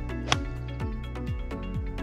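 Background music with a steady beat of about two drum strokes a second. About a third of a second in comes a single sharp click: a gap wedge striking a golf ball.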